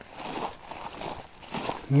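Faint, irregular footsteps on dry grass and patchy snow as a person walks, with handheld camera handling noise.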